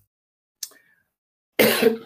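A man coughs once, a short, sharp cough near the end.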